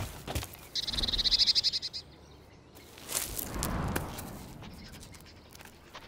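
A small songbird calls with one rapid, high-pitched buzzing trill lasting about a second. A few seconds in comes a softer rustling sweep.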